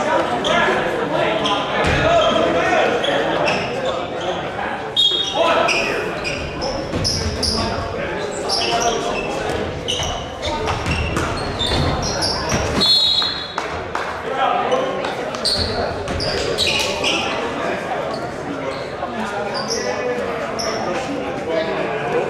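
Indoor high school basketball game in a gym: the ball bouncing on the hardwood court, with short high squeaks from sneakers and players and spectators talking and calling out, all echoing in the large hall.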